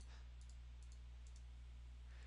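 Near silence with a few faint computer-mouse clicks: one short cluster about half a second in and two more about a second later. A steady low electrical hum lies underneath.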